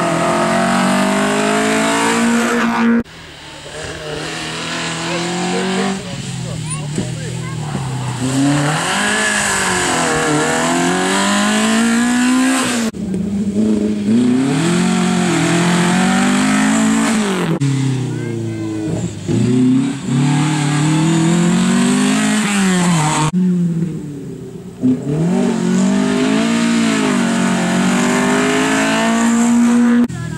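Historic rally cars passing one after another, their engines revving hard under acceleration, with the pitch climbing and dropping through repeated gear changes. The sound breaks off abruptly several times between passes, the first pass being a Ford Anglia.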